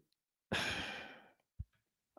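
A man's sigh: one breathy exhale that starts about half a second in and fades away within a second, followed by a single brief click.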